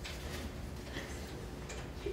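A few faint, irregular clicks of typing on a computer keyboard as a password is entered, over a steady low room hum.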